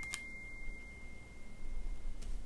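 A faint, steady high-pitched tone that slowly fades away, with a single sharp click just after it begins.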